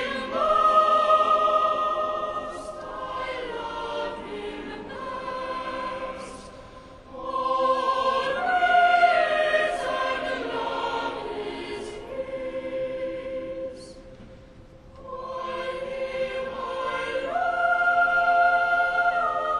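Church choir singing sacred music in long held chords, in three phrases with short breaks about six and fourteen seconds in.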